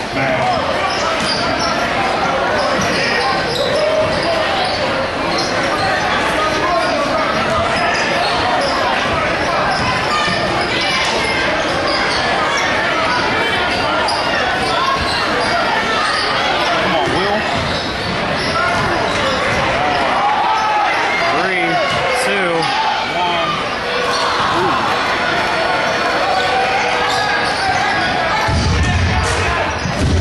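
Basketball game in a large gym: a ball bouncing on the hardwood court under the constant chatter and calls of a crowd of spectators, echoing in the hall. A deep rumble comes in near the end.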